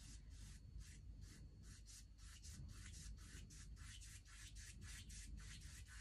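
Faint, quick rubbing strokes on watercolour paper, about five a second, as a hand works across the sheet on the easel.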